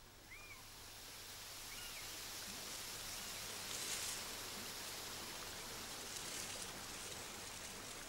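Faint, steady wash of gently running water, fading in about half a second in, with two faint high notes in the first two seconds.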